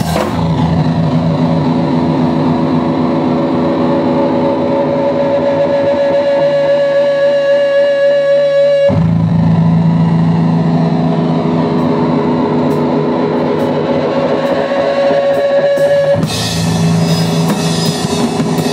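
Live electric guitar and drum kit: the drums drop out and the guitar holds sustained, ringing chords that change about nine seconds in. The drums and cymbals come back in about two seconds before the end.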